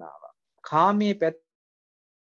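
Only speech: a man's voice says a short phrase, then a pause.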